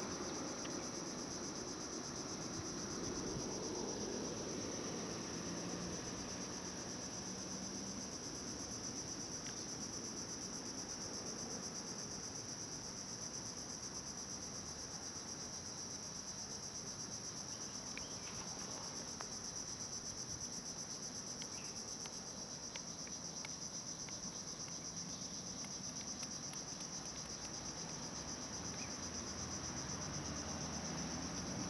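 A steady, high-pitched chorus of insects droning in the roadside trees, unbroken throughout, over a faint low background hum.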